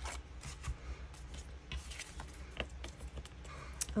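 Light rustling with a few soft, scattered clicks as a book-page-covered playing card is worked out of a one-inch circle punch and handled, over a steady low hum.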